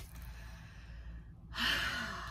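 A woman sighs: a soft breath, then a louder breathy exhale about one and a half seconds in that trails off.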